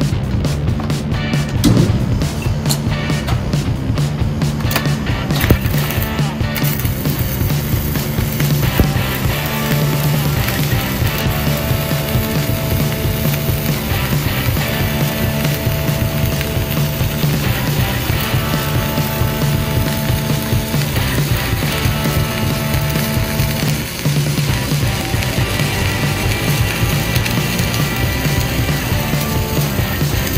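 Flux-cored arc welding: the steady crackle of the arc running an overhead fillet weld, starting about six seconds in. Background music plays throughout.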